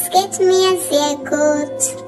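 A high voice saying a short phrase over soft, steady background music.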